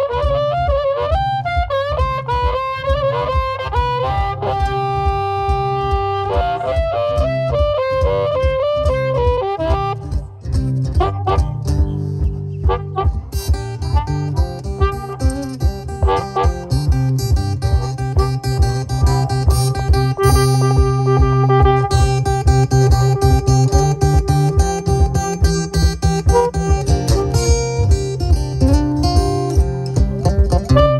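Instrumental blues boogie on a Cole Clark acoustic guitar and a harmonica. The harmonica plays wavering, held notes over a driving guitar rhythm with a steady low beat.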